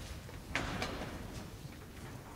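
A choir standing up from their seats: a low rumble of shuffling feet and moving chairs, with two sharp knocks about half a second and just under a second in. It carries in a large stone church.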